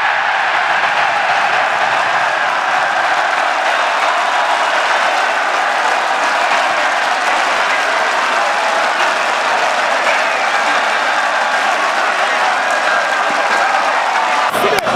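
Stadium crowd cheering and applauding a home-team goal, a loud, steady roar of many voices and clapping.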